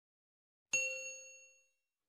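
A single bell-like notification ding sound effect, struck about two-thirds of a second in and fading away over about a second.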